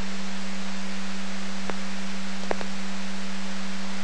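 A scanner receiving a VHF fire dispatch channel between announcements: steady radio hiss with a low steady hum under it, and two faint clicks near the middle.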